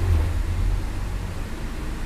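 Steady low rumble with a faint even hiss: background noise in a pause between speech.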